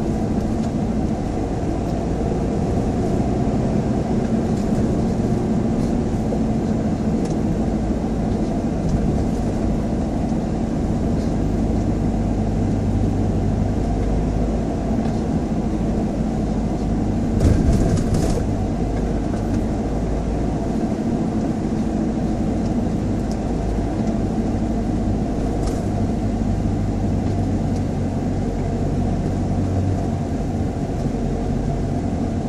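Car driving at steady speed, heard from inside the cabin: a continuous low drone of engine and tyre noise. A little past halfway there is one brief louder knock.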